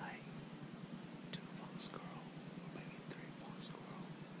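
A man whispering softly, with a few sharp hissing 's' sounds standing out.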